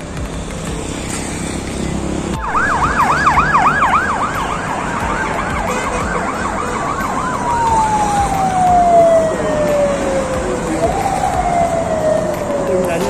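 A vehicle siren starts about two and a half seconds in with a fast yelp, about five rising-and-falling sweeps a second. The yelp gives way to a long, slowly falling wail. Near the end the pitch rises briefly and then slides down again.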